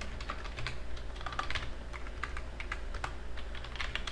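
Typing on a computer keyboard: quick, irregular keystrokes, over a steady low hum.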